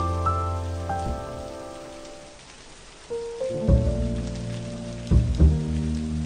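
Steady rain falling, mixed with a soft jazz piano track. A rising piano phrase dies away in the first two seconds, leaving only the rain. About three seconds in, the piano comes back with deep bass notes.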